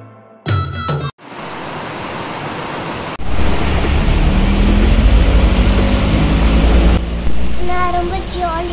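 Steady rain falling, with water dripping from a roof edge. About three seconds in it turns louder, with a deep rumble underneath.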